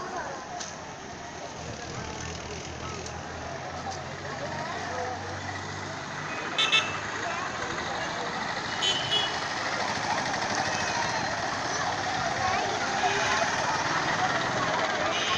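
Street ambience of traffic and background voices. A motor vehicle engine runs steadily through the first half, a couple of short sharp high sounds come around the middle, and the traffic grows louder toward the end.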